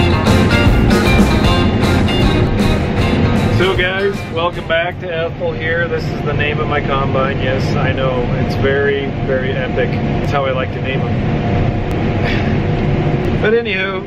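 Rock music with guitar for about the first four seconds, then a man's voice over the steady low hum of a combine harvester's cab while it picks corn.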